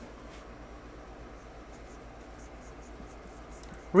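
Faint scratching of a marker pen writing letters on a whiteboard, over a low steady room hum.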